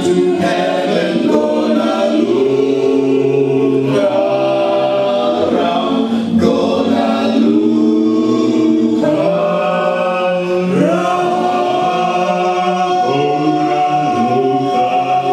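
Male vocal group singing an unaccompanied gospel song in close harmony, holding long chords.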